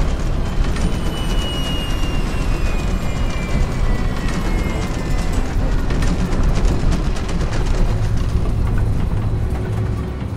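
Steady, loud rumble of a Boeing 737's jet engines in the cockpit. A high whine falls slowly in pitch over the first few seconds as the burning right engine is throttled back. A music score plays underneath.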